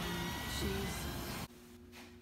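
Outdoor background noise, an even hiss, that cuts off abruptly about one and a half seconds in. Quieter indoor room tone with a steady low hum follows.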